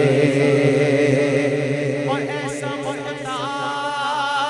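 Unaccompanied vocal chorus holding a steady hummed drone, as used behind devotional kalam singing in place of instruments. About halfway through, a solo male voice comes in over it with a wavering, ornamented melodic line.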